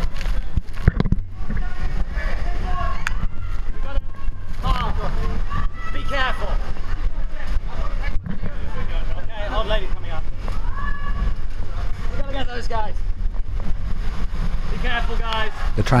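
Super Typhoon Haiyan's wind and rain blowing hard against the microphone in a steady low rumble, with people shouting to each other at intervals and floodwater sloshing as they wade.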